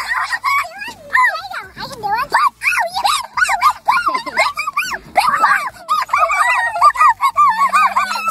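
Children's voices, very high-pitched squealing and chattering with quick rises and falls in pitch. Near the end a low steady tone comes in.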